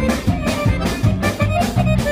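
Balkan party band playing live: accordion and violin over electric guitar, bass and drum kit, with a fast, steady beat.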